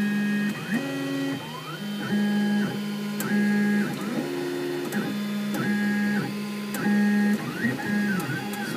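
XYZ da Vinci 3D printer's stepper motors whining as the print head moves during a print. The whine comes as a run of held tones that jump to a new pitch about once a second, with short rising and falling glides as the head speeds up and slows down.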